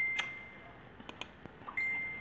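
A computer notification chime: a single high ding that fades away over about a second, heard dying out at the start and struck again near the end. A few faint clicks sound between the two dings.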